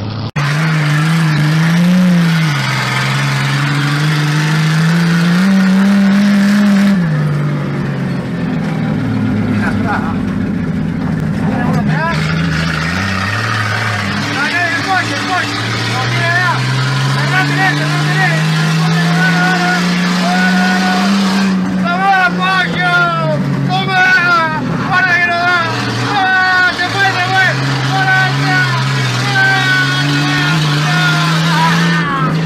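Six-cylinder car engine racing on dirt, heard from inside the car, its pitch climbing in long pulls and dropping back several times. In the second half, voices shout over it.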